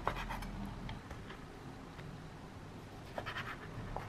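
Chinese cleaver cutting through raw pork belly and knocking on a wooden cutting board: a quick cluster of short chops at the start and another about three seconds in, with lighter scraping between.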